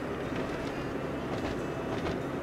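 Steady low rumble of a car driving, its road and engine noise heard from inside the cabin.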